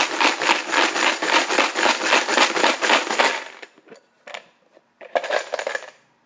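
Plastic numbered raffle tokens rattling inside a plastic draw box as it is shaken hard: a dense, rapid clatter that stops about three and a half seconds in, followed by two short rattles near the end.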